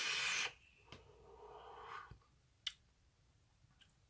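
A high-wattage vape mod with a dual-coil dripper (80 watts on a 0.1 ohm build) being drawn on: a steady hiss of air pulled through the firing coils that stops about half a second in. A much softer breathy exhale of vapour follows, then a single faint click.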